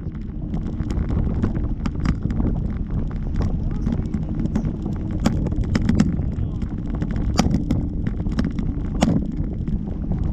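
Wind buffeting the camera's microphone on a parasail in flight: a steady low rumble broken by scattered sharp pops and taps.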